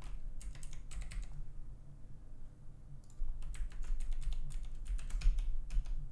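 Typing on a computer keyboard: a quick run of keystrokes, a pause of about a second and a half, then a longer run of keystrokes.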